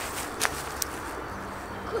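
Quiet outdoor background with a light tick about half a second in and a fainter one just after: a thrown pine cone striking.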